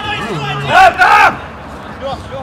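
Men shouting during a mini-football match: two loud yells about a second in, with shorter calls before them.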